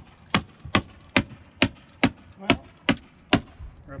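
Hammer tacker (hammer stapler) driving staples through plastic sheeting into a wooden raised-bed frame: about nine sharp, evenly spaced strikes, a little over two a second, stopping near the end.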